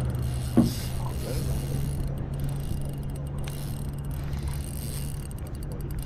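Daiwa Revelry 2500 spinning reel being wound steadily, a low, even mechanical whirr from its gears as line is retrieved.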